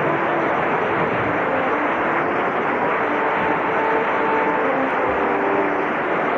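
Opera house audience making a steady, dense wash of applause and voices, with a few brief pitched calls rising out of it.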